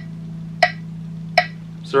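Phone metronome app clicking at 80 beats per minute, a sharp tick about every three quarters of a second, played through the phone's speaker. A steady low hum sits under the clicks until just before the end.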